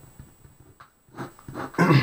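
A man clears his throat, loud, starting near the end, after a second of faint pen taps and strokes on paper.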